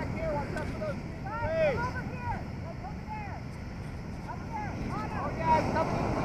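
Ocean surf and wind on the microphone, with indistinct voices calling out over it in short bursts, mostly about a second in and again near the end.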